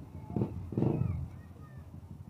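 A person's voice: two short, loud vocal sounds about half a second and a second in, over faint street background.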